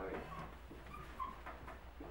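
Dry-erase marker squeaking in short, high-pitched strokes on a glass board as an equation is written, over a steady low room hum.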